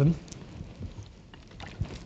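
A pause in a man's speech: the end of a spoken word at the very start, then low room noise with a few faint clicks, the clearest near the end.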